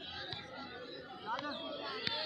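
People's voices chattering without clear words, with rising and falling voice glides, and a sharp knock near the end.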